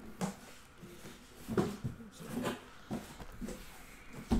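Panini Flawless briefcase-style boxes being handled: about half a dozen short knocks and scuffs, spaced irregularly.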